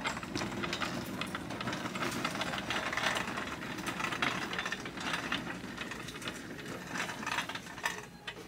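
Plastic shopping cart rolling over a hard store floor, its wheels and basket rattling with a continuous run of small irregular clicks.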